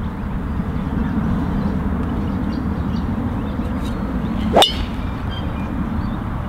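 A golf driver striking a teed ball: one sharp crack of clubface on ball about four and a half seconds in, over a steady low rumble of background noise.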